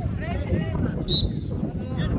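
A voice cries out briefly, then a referee's whistle gives one short blast about a second in as a player goes down, signalling a foul, over steady wind on the microphone and spectators' voices.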